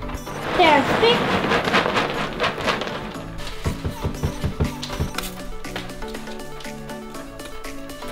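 Old rabbit-cage litter of pellets and hay sliding and pouring out of a tipped black plastic cage tray into a bin bag, with a string of sharp knocks about halfway through. Background music plays underneath.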